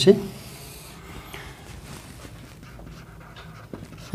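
Whiteboard marker drawing a long stroke down the board: a faint rubbing in about the first second, then a few faint small scuffs and clicks.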